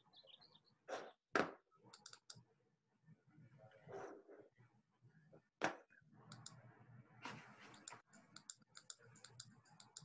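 Faint clicking and tapping of a computer mouse and keyboard, picked up over a video call. A few sharper clicks stand out, the loudest about a second and a half in and again past the middle, with a brief rustle about seven seconds in.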